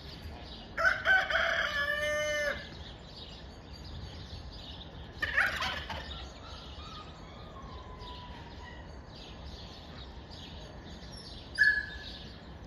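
A rooster crowing once, a long call starting about a second in. Other poultry calls follow around five seconds in and again briefly near the end, over faint chirping.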